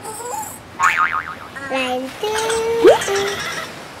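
Cartoon sound effects: a squeaky cartoon character voice straining and chattering, then held tones and a quick rising glide about three seconds in, the loudest moment.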